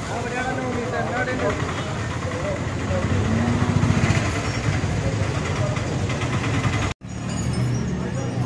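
Street noise: people's voices over the steady rumble of passing vehicles, an autorickshaw and a car among them. The sound cuts off suddenly about seven seconds in, then a low rumble resumes.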